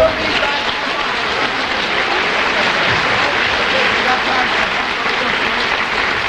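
Studio audience applauding steadily, with voices talking over it.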